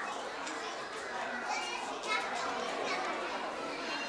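Young children's voices chattering and calling out over one another, with no music.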